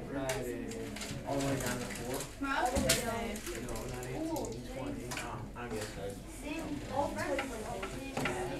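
Indistinct chatter of many students' voices overlapping in a classroom, with a sharp clatter about three seconds in.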